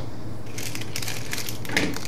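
Hard plastic parts and a plastic punch-down tool being handled and picked up on a wooden desk: a quick run of clicks, taps and rustles through the second half, over a steady low hum.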